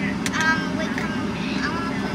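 Car engine idling, a steady low hum heard from inside the cabin, with a child's faint voice briefly twice.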